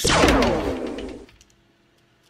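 Cartoon blast sound effect for an attack hitting: a loud burst that sweeps down in pitch with a low rumble, then dies away after about a second and a half.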